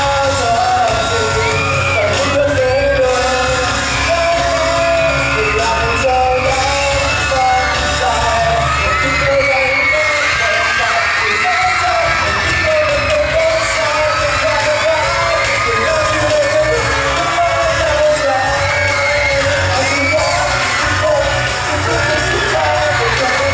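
Live pop-rock song played loud through a PA in a hall: a male singer singing over a band, with a young audience screaming and yelling over the music.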